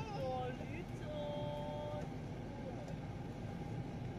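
Steady low engine rumble heard from inside a car waiting on a ferry's car deck. Over it comes a high, voice-like sound that falls in pitch at the start, then a held tone for about a second.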